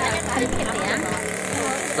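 Faint background voices of people talking, over a steady low hum and hiss.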